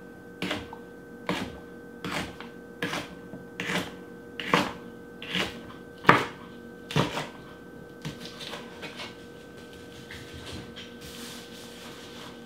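Chef's knife slicing jalapeño peppers into rings on a plastic cutting board: a steady chop against the board about every three-quarters of a second. The chops turn to lighter, quicker taps about eight seconds in, then stop.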